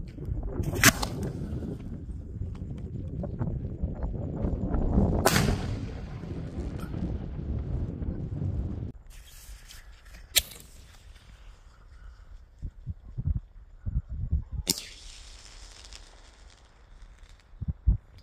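Consumer fireworks going off: a dense run of crackling for about nine seconds, punctuated by loud bangs about a second in and near five seconds. Louder single reports follow near ten and fifteen seconds, scattered smaller pops fall in between, and a last sharp bang comes just before a red aerial burst.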